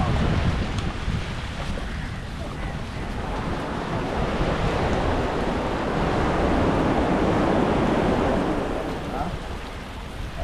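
Sea surf washing on the shore, with wind buffeting the microphone; the rush swells louder midway and eases near the end.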